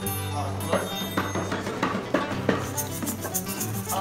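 Music with small hand drums struck in an irregular rhythm, with some shaker-like rattle.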